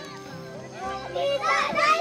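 Children's voices shouting and calling out, starting about a second in and growing loud near the end, over faint steady background music.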